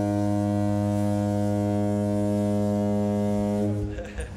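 A single low note held steadily, rich in overtones, fading out near the end: a drone in the opening soundtrack.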